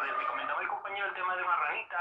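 Speech over a phone call heard through a smartphone's speaker: a voice talking without pause, with the thin, narrow sound of a telephone line.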